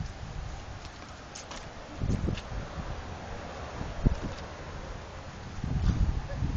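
Wind buffeting the phone's microphone in low rumbling gusts, with a single sharp knock about four seconds in.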